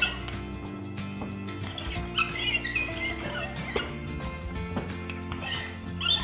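Wooden rolling pin with handles squeaking in short, repeated chirps as it is rolled back and forth over pizza dough, most of them around the middle, with soft background music underneath.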